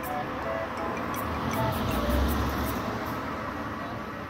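Japanese town's 5 pm public chime playing a slow melody from outdoor loudspeakers over street noise, the daily evening signal. A car drives by on the road, loudest about halfway through.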